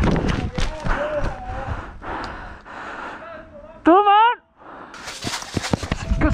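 A person running on a dirt path, breathing hard, with footfalls and rustling. About four seconds in comes a short, loud, wavering vocal cry, then a moment of near quiet before the running noise picks up again.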